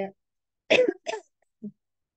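A woman coughing twice in quick succession, followed by a short, softer throat sound.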